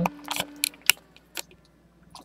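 Several short clicks and light taps in the first second and a half, from a webcam being handled and repositioned.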